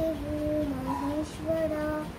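A young girl singing a slow melody unaccompanied, holding long notes that step gently up and down in pitch.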